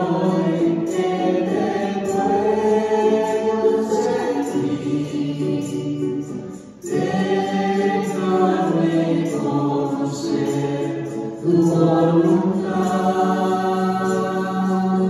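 A church congregation singing a hymn together, led by a man singing into a microphone, in long held notes. There is a brief break for breath about seven seconds in.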